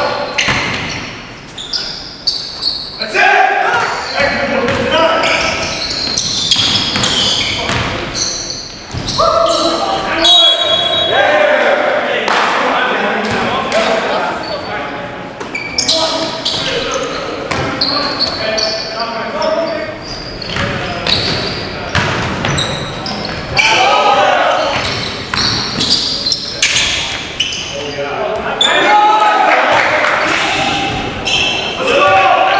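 Basketball bouncing on a hardwood gym floor during a game, with many short sharp impacts, mixed with indistinct shouts and calls from players, all echoing in a large gym.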